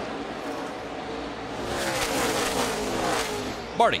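NASCAR Xfinity stock cars' V8 engines running at race speed, several cars at once, their pitch falling as they go past about two seconds in.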